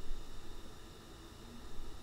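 Faint, steady hiss with a low hum: the background noise of a voice recording, with no other sound.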